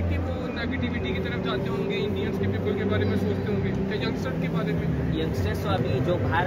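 Men talking, with a steady low hum and the background noise of a crowd.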